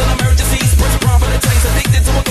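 Hands up electronic dance music with a steady four-on-the-floor kick drum, a little over two beats a second.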